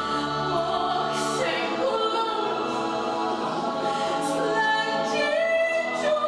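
A stage chorus singing slow, held notes in harmony, live in a theatre.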